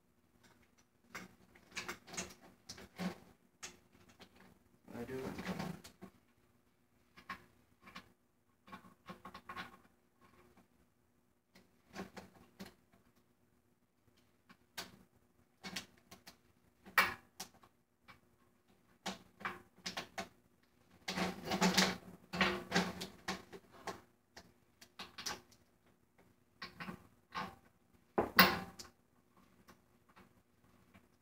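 Irregular small clicks, taps and scrapes of hands working on a snare drum's metal hoop and tension rods while changing its head. A few longer scraping stretches and some sharper single knocks come in between.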